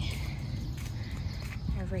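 Steady low outdoor background rumble with no distinct event, as the handheld phone is carried along a walkway. A word is spoken briefly near the end.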